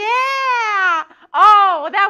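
A woman's loud, high-pitched whooping: one long drawn-out call that rises and falls, then a shorter one about a second later.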